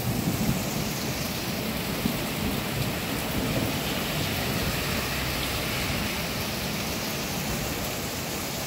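Heavy rain pouring steadily onto a garden, lawn and street, an even rushing hiss. A low rumble dies away in the first second.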